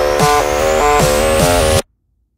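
Electronic background music: a quick, repeating pattern of synth notes over a bass line, with a thin tone rising high above it. It cuts off suddenly near the end.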